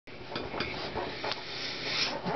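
Handling noise from an acoustic guitar being settled into position: rubbing with a few light knocks against the wooden body, over a steady hiss.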